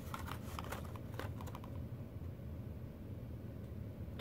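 Faint light clicks and rustles of carded plastic blister packs of toy cars being handled, fading out after about a second and a half, over a low steady room hum.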